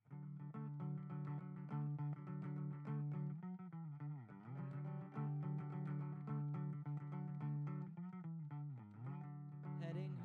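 Solo hollow-body electric guitar playing a song's instrumental intro, starting suddenly with ringing, sustained notes. Twice, about four seconds in and again near nine seconds, the notes dip in pitch and come back up.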